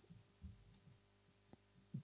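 Near silence, with a faint steady electrical hum and a couple of faint soft thumps, one about half a second in and one near the middle.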